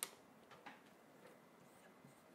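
Near silence: room tone with a sharp click right at the start and a fainter tick a little over half a second in, from a marker and a paper sheet being handled.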